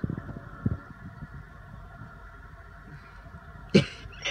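Steady low background hum, with a single sharp knock near the end.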